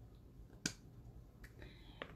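Handling noise of a phone being adjusted close to its microphone: one sharp click a little over half a second in, then a fainter tick near the end, over quiet room tone.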